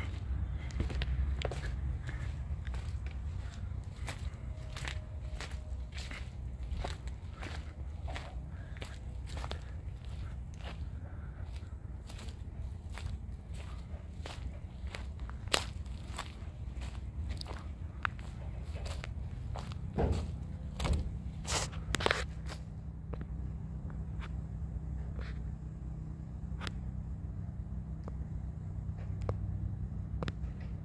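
Footsteps on dry leaves and twigs at a steady walking pace, about two steps a second, over a steady low rumble. A few louder steps come about twenty seconds in, and the steps thin out to occasional ones in the last several seconds.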